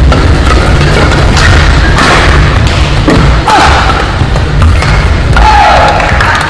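Badminton rally: rackets striking the shuttlecock about once a second, with a couple of short shoe squeaks on the court floor, over a steady low thumping in the arena.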